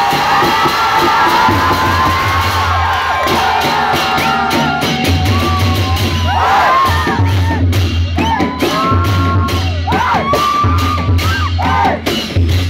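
Newar dhime drums, double-headed barrel drums, beating a steady rhythm with rapid, evenly spaced clashes of hand cymbals, over a crowd cheering and whooping.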